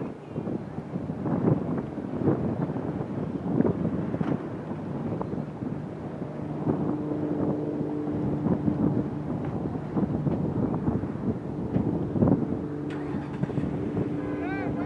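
Wind gusting and buffeting an outdoor camera microphone in irregular bursts, with a steady low hum joining about halfway through.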